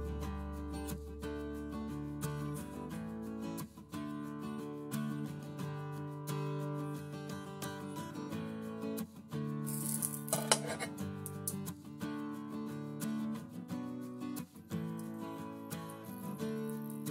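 Background music of plucked acoustic guitar, with a brief noisy burst about ten seconds in.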